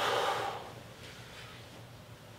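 A sharp exhale through the mouth, lasting about half a second at the start, the effort breath of a man beginning a seated dumbbell lateral raise; after it, only faint room noise.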